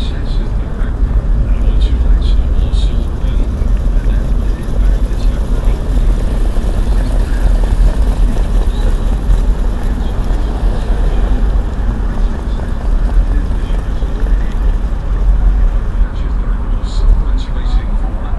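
Steady low rumble of engine and road noise heard from inside the cabin of a harness-racing starting-gate car as it drives along the track.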